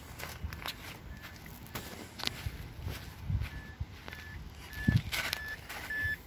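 Footsteps as someone walks around a 2005 Mazda 3, with the car's warning chime beeping steadily about every 0.6 s and growing louder as the open driver's door is reached. It is the reminder chime for a key left in the ignition with the door open.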